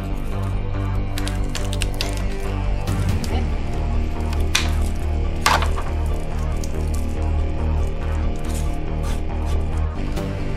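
Background music with steady held notes over a strong bass, and a few sharp clicks, the loudest about five and a half seconds in.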